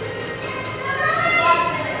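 Indistinct chatter of children and adults in a large gym hall, several voices overlapping.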